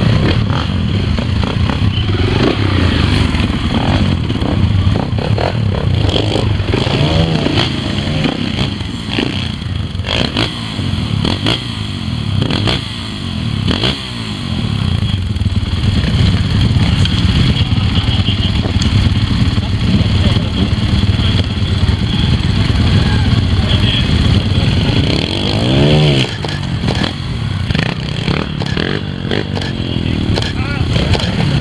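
Trials motorcycle engine running at low revs with repeated sharp throttle blips and revs as the bike is ridden up a steep rocky section. Scattered clicks and knocks come from the bike on the rock, with the voices of onlookers underneath.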